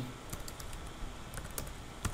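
Typing on a computer keyboard: a handful of light, irregularly spaced keystrokes.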